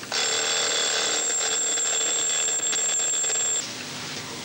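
Alarm clock going off, ringing steadily for about three and a half seconds and then cutting off suddenly.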